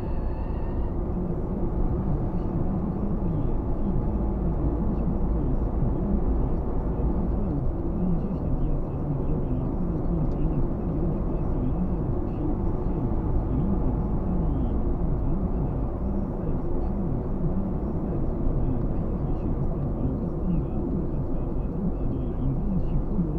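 Steady low rumble of a car's engine and tyres at road speed on asphalt, heard from inside the cabin.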